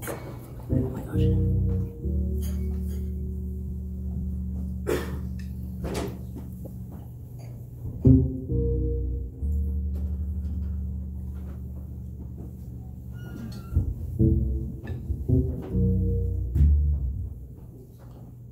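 Electric bass opening a slow jazz tune, playing long held low notes with some higher chord tones over them, in unhurried phrases; a sharp click about five seconds in.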